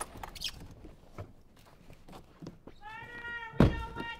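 A heavy thump about three and a half seconds in, over a high, drawn-out whine that starts shortly before it and holds steady; a few faint clicks and knocks come earlier.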